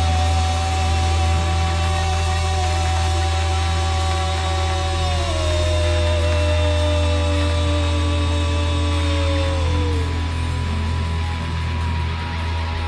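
Live rock band holding a loud, droning instrumental passage: long sustained notes over a steady low bass drone, sliding down in pitch about halfway through and again shortly before the end.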